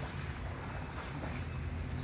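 Steady low background rumble with a faint even hiss and no distinct event.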